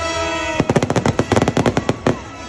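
Fireworks going off in a rapid, uneven string of sharp bangs, about a dozen a second, starting about half a second in, over orchestral music that plays throughout.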